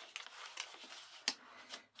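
Faint rustling and handling of paper and card as a paper envelope portfolio is opened and moved about, with one sharper tick a little over a second in.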